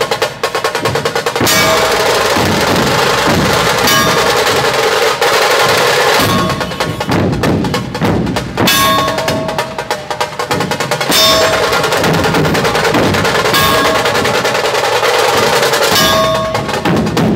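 Dhol-tasha pathak drumming: a large group of barrel dhols beaten with sticks, together with tashas, playing a loud, fast, dense rhythm. A ringing tone returns every few seconds.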